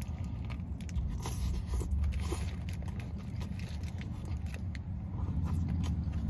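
Biting into and chewing a Whopper burger: small wet clicks and soft crunches of bun and lettuce, with the paper wrapper crackling, over a steady low rumble.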